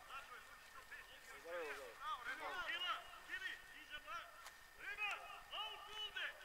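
Faint, scattered shouts and calls of footballers on the pitch, short voiced calls coming and going across the field.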